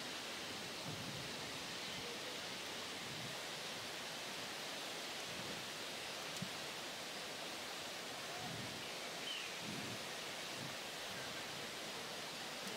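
Steady, faint rush of whitewater rapids on a canoe slalom course.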